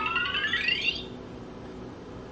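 VTech Touch & Learn Activity Desk Deluxe toy playing a short electronic jingle through its small speaker: a quick upward run of synthesized tones, lasting about a second, after it speaks a letter word.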